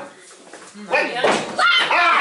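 Voices and laughter with a sudden thump about a second in, as a small whiteboard is set against a chalkboard.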